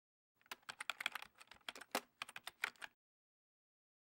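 A quick, irregular run of light clicks and taps, starting about half a second in and stopping near three seconds: a writing sound effect that goes with the marker lettering.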